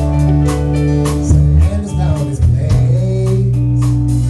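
Live rock band playing a song: electric and acoustic guitars over bass and a steady drum beat.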